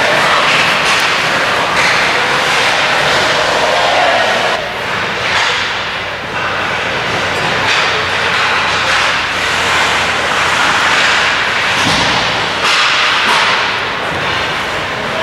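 Ice hockey play up close: skate blades scraping and carving the ice, with sharp clacks of sticks and puck and occasional thuds.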